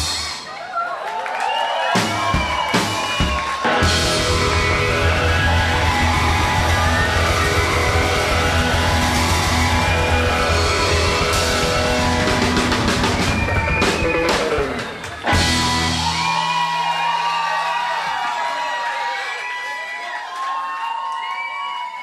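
A live rock-and-roll band playing, with electric guitar, drums and a strong bass line. About fifteen seconds in the band stops, and crowd noise with cheering voices carries on, fading toward the end.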